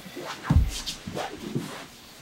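Two grapplers in gis moving on a foam mat: a dull thump about half a second in, then gi fabric rustling and shuffling as they change position.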